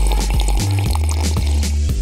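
Background music with a repeating bass line and beat, over which a drink is poured.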